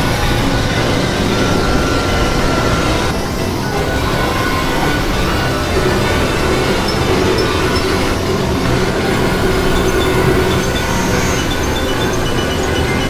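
Experimental electronic noise music from synthesizers: a dense, steady wall of noisy drone with faint, thin held tones over it.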